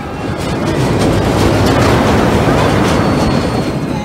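Fireball giant-loop ride's train rolling along its circular steel track, a rushing rumble that swells as the train swings down past and is loudest around the middle before easing off.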